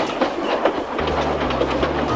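Freight wagons rolling along a track, their wheels clicking over rail joints in a quick clickety-clack, about six clicks a second.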